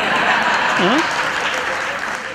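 Theatre audience applauding and laughing, dying down toward the end.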